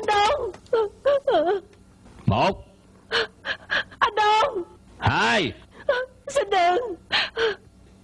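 A woman sobbing and wailing in short, broken cries with gasping breaths between them; one longer wail about five seconds in rises and then falls in pitch.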